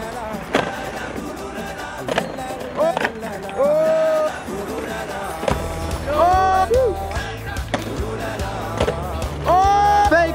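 Skateboards rolling on paving and cracking sharply as boards are popped and landed on a concrete ledge and steps, over background music whose low bass comes in about halfway through.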